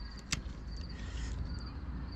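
Pet nail clippers snap shut on a dog's toenail with a single sharp click about a third of a second in. Faint, short, high insect chirps recur in the background.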